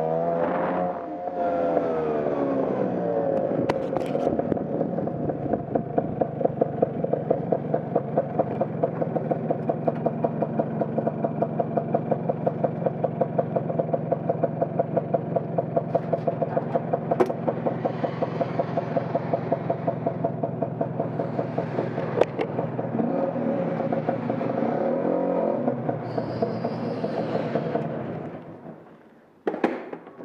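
Motor scooter engine easing off as the scooter slows, then idling steadily with an even, rapid pulsing beat for most of the time. Its pitch wavers near the end before it is switched off, and a few sharp knocks follow.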